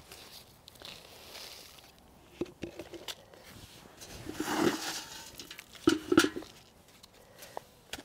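Potting soil poured from a small tub into a one-gallon plastic nursery pot and pressed down by gloved hands: soft, intermittent rustling and crackling with a few light knocks, loudest about halfway through.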